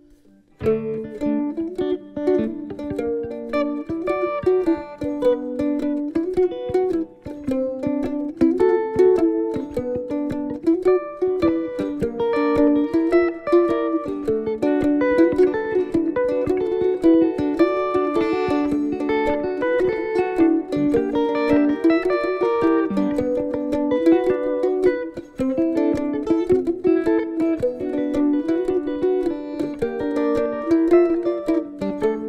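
A mandolin and a small round-bodied plucked string instrument play an instrumental passage together, with quick picked notes. The playing starts about half a second in, after a brief pause.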